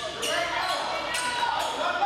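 Voices echoing in a gymnasium, with three sharp knocks of a basketball bouncing on the hardwood court.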